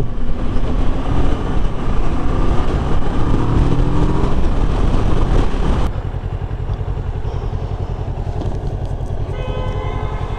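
Kawasaki Ninja 650 parallel-twin motorcycle riding at highway speed, engine and wind noise loud on the helmet camera. About six seconds in the sound cuts to a quieter, evenly pulsing engine, and a vehicle horn sounds near the end.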